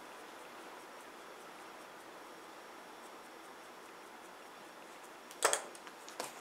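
Faint steady room tone in a ceramics studio, broken about five and a half seconds in by a single sharp knock on the wooden worktable.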